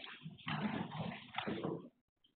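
Two cats play-fighting, with cat vocal noises and scuffling in two bursts, heard through a security camera's narrow-band microphone.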